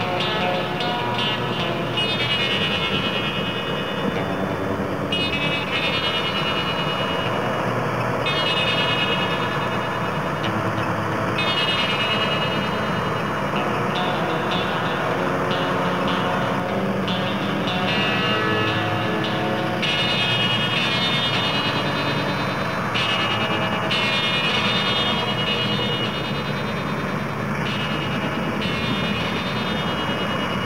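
Combine harvester running steadily as it works through the crop, with background music playing alongside.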